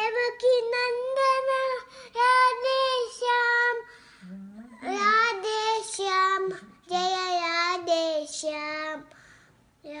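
Young girl singing unaccompanied in a high voice: three long, held phrases with short breaks for breath between them.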